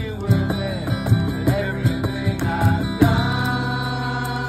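Acoustic guitar strummed in a live song with men's voices singing along. About three seconds in, a fresh strummed chord rings out and is held.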